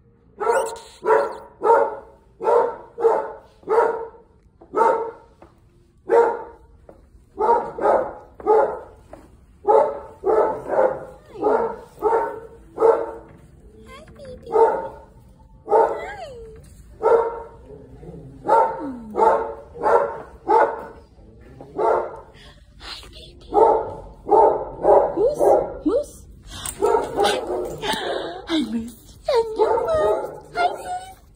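Dogs barking over and over, about two barks a second with short breaks. Near the end the barks come thicker and overlap.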